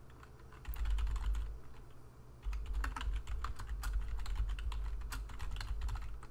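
Typing on a computer keyboard: a short run of keystrokes about a second in, a brief lull, then steady typing.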